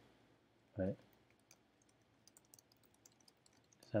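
Computer keyboard typing: a quick run of quiet key clicks starting about a second and a half in.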